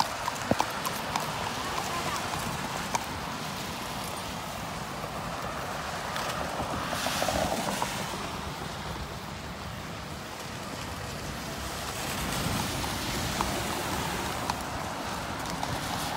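A horse walking, its hooves clip-clopping, against traffic hissing past on a rain-wet road. The traffic noise swells as vehicles pass, about seven seconds in and again a few seconds before the end.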